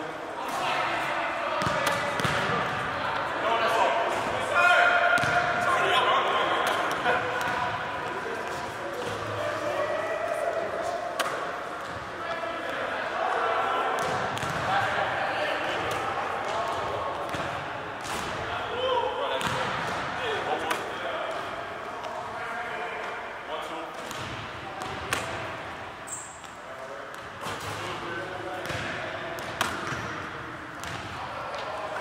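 Basketballs bouncing on a hardwood gym floor and knocking sharply at intervals, heard in a large hall, with people's voices talking throughout.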